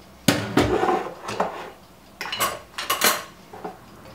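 A china plate set down with a clatter in a stainless-steel sink, followed by scattered clinks and taps as a glass jar is opened and its lid put down on the counter.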